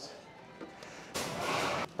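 Low background for about the first second, then a brief rustle of handling, under a second long, that stops suddenly.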